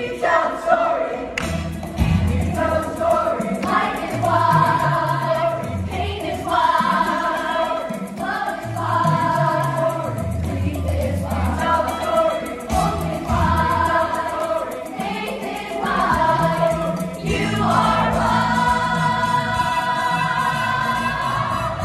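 Children's musical-theatre ensemble singing together in chorus over a recorded backing track with a bass line, in phrases of held notes.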